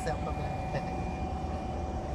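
Steady low hum with a faint constant high whine from a running 500 W, 12 V DC-to-AC power inverter.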